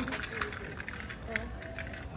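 Faint, indistinct voices over low street background noise, with a few light clicks like footsteps on pavement.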